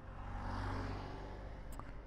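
Road traffic: a vehicle goes past, its noise swelling and fading over about a second, over a steady low engine hum, with a brief click near the end.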